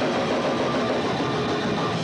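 Live rock band playing loudly: a dense, steady wash of distorted electric guitar and drums.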